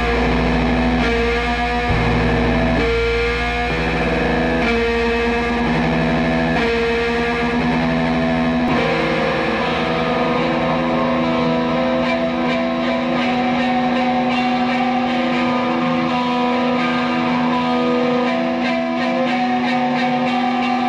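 Post-hardcore band music: a distorted electric guitar with effects over a heavy low bass. About nine seconds in the bass drops away, leaving a sustained guitar drone with faint ticking above it.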